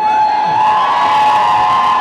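A single long, high 'woo' whoop of cheering, held for about two seconds and rising slightly in pitch partway through, over a haze of crowd noise.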